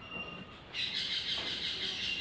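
A marker drawing lines on a whiteboard makes a high, scratchy squeak that starts about a second in and holds steady.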